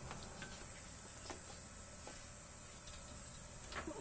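Faint scattered clicks as the stopped metal shaper's speed-change lever is worked, over quiet room tone with a faint steady high whine.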